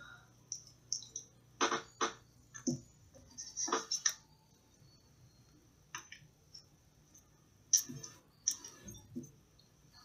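Irregular small clicks and taps of steel needle-nose pliers pressing and handling a square of aluminium foil glued onto a lead pellet on a hard tabletop, about a dozen scattered through, a few of them sharper than the rest.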